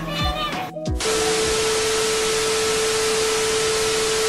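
Television static sound effect: an even hiss with a single steady tone under it, cutting in suddenly about a second in and holding at a constant level.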